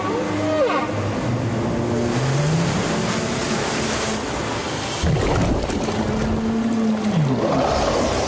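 Rushing, churning water with a low musical score of long held notes that slide up and down over it.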